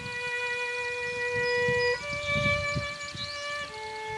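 Violin playing a slow melody in long held notes: one note held about two seconds, then a step up to a higher note held nearly as long, dropping to a lower note near the end.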